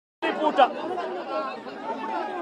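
The sound drops out completely for a fraction of a second, as at an edit, then a man's voice resumes speaking to reporters, with other voices in the crowd around him.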